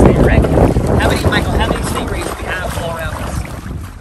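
Wind buffeting the microphone over open water, a low rumble that is loudest at first and eases off, with faint voices in the background.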